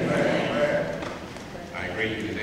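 Speech only: a man's voice speaking into a microphone.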